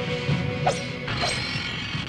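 Film background score with a steady beat and a held note, with two sharp whooshes of martial-arts moves about two-thirds of a second and a second and a quarter in.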